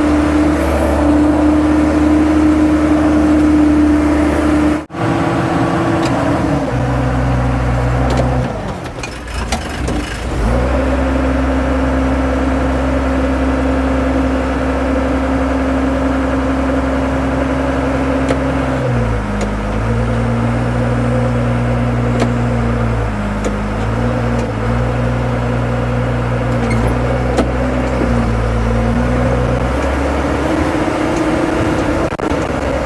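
A heavy excavator's diesel engine runs steadily. After a sudden break about five seconds in, a dump truck's diesel engine runs high while its bed tips and dumps a load of dirt. From about two-thirds of the way in, the engine speed steps down and back up several times.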